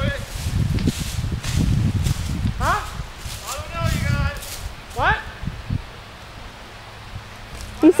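Footsteps and rustling through dry brush and tall grass, with several short shouts from people further off in the middle. The rustling dies down for the last couple of seconds.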